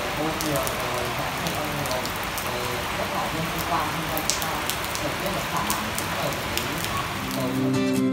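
Steady rain falling on a wet paved courtyard, with scattered sharper drips. Acoustic guitar music fades in near the end.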